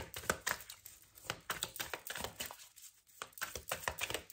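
A Santa Muerte tarot deck being shuffled by hand, the cards slapping and clicking against each other in quick, irregular strokes, with a short pause a little before three seconds in.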